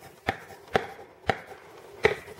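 A coloured pencil colouring in on paper over a hard table: three sharp taps of the lead about half a second apart, with faint scratching between them.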